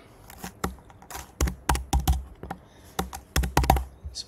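Typing on a computer keyboard: a run of irregular keystrokes, some noticeably heavier than others.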